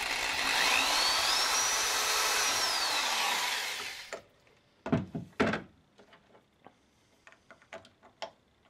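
Electric drill with a large triangular-tipped wood bit boring through a soft plastic bottle bottom. It runs for about four seconds with a whine that rises and then falls, stops suddenly, and is followed by a few knocks and clicks as the bottle is handled.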